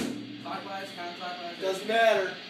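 Indistinct voices and laughter in a small room, with the last of a loud drum kit hit cutting off right at the start.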